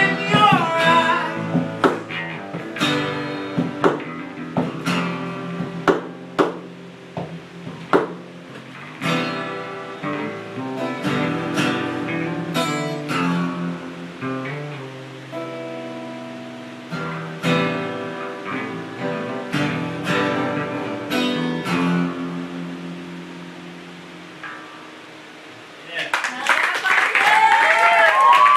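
Acoustic guitar playing the song's closing instrumental passage live, with a last sung phrase in the first second. The passage gradually fades. About two seconds before the end, the audience bursts into applause, cheers and whoops.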